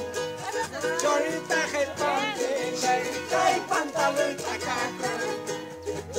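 Charango strummed in a steady dance rhythm while a group sings Bolivian carnival coplas.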